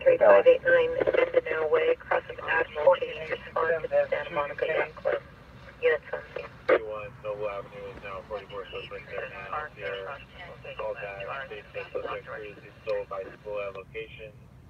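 Indistinct voice traffic over a police scanner radio, continuous and muffled, with a narrow radio sound.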